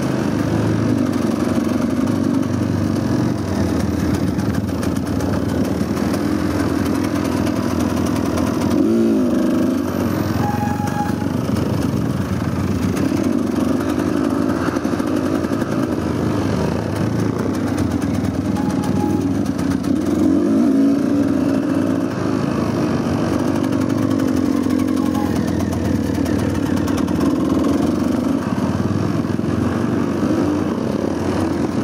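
Dirt bike engine running while being ridden on a trail, its revs rising and falling with the throttle. A quick rev up and back down comes about nine seconds in, and it runs louder for a moment around twenty seconds.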